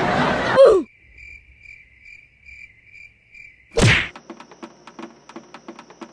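Crickets-chirping sound effect: a thin, high chirp repeating about two and a half times a second for about three seconds over otherwise dead quiet, with a swoosh before and after it. Music with a light ticking beat starts near the end.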